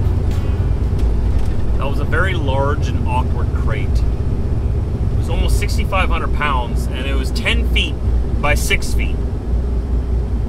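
Steady low drone of a truck's engine and road noise, heard from inside the cab while driving, with a man talking over it.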